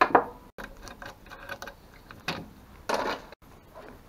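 Metal parts of a partly dismantled Bosch alternator clinking and knocking as they are handled on a workbench, with two louder clatters about two and a half and three seconds in.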